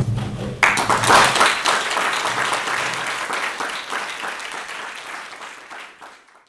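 Audience applause, a dense mass of clapping that starts about half a second in and slowly fades away toward the end.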